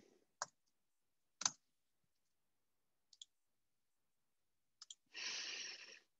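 A few scattered clicks from a computer keyboard and mouse: single clicks about half a second and a second and a half in, then fainter paired clicks near three and five seconds. Near the end, a breath into the microphone.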